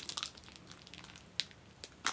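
Chocolate bar wrapper crinkling faintly in the hands: a cluster of small crackles at the start, then scattered single ticks, one sharper about a second and a half in.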